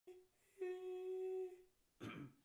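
A single steady pitched note with overtones, held for about a second after a short blip at the start.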